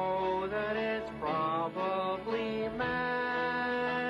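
A slow song sung in a male character voice with banjo accompaniment, the voice holding long notes that step from pitch to pitch.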